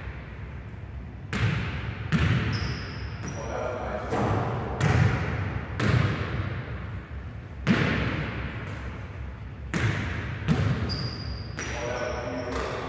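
A basketball bouncing on a hardwood gym floor, about eight separate bounces at irregular intervals, each ringing on in the hall. Short high-pitched sneaker squeaks come about two and a half seconds in and again near the end.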